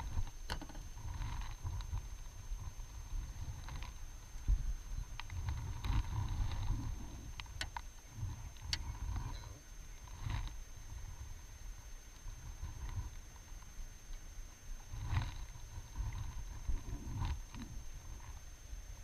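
Wind buffeting an action camera's microphone in gusts, with water lapping and a few light clicks from the fishing rod and reel being handled.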